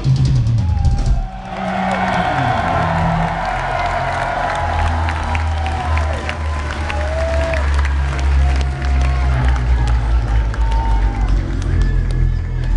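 Heavy metal band playing live, heard from the audience: pounding drums with heavy distorted guitar and bass, a few held, bending guitar notes in the middle, and a brief dip in loudness about a second in.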